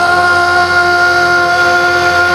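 A singer holding one long, steady note over recorded musical-theatre backing music, sliding up into it just before and sustaining it without a break.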